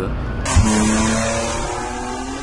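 A motor vehicle driving along a road, its engine running with a steady drone. It starts suddenly about half a second in, right after a short spoken phrase.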